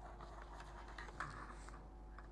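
Faint, scattered clicks of a computer keyboard being typed on.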